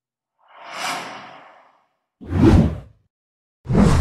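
Whoosh sound effects of an animated title intro: a swelling swoosh starting about half a second in, then two shorter, louder whooshes with a heavy low end about two and three and a half seconds in, with dead silence between them.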